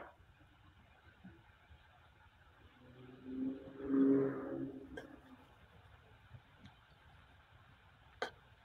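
Mostly near silence, broken by one faint passing vehicle about three to five seconds in: a steady low hum that swells and fades.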